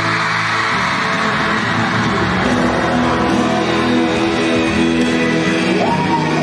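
Live pop-rock band music with electric guitar and sustained chords, played loud; a singing voice slides up and back down near the end.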